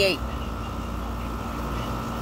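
A steady low machine hum with a faint constant tone above it, running evenly without change; the last of a spoken word is heard at the very start.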